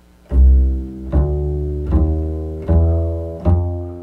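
Upright double bass played pizzicato: five plucked notes about 0.8 s apart, each ringing and fading, in a walking line that climbs by two half-steps (E-flat, E) to F. This is the chromatic approach to the F7 chord.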